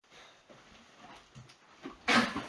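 Faint soft footsteps and shuffling of people moving about on carpet, with a few quiet thumps, the clearest just before the end.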